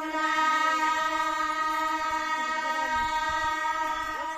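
Group of women singing in unison, holding one long, steady note of a Putla dance song.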